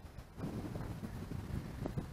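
Wind buffeting the microphone outdoors: a low, uneven rumble that picks up about half a second in.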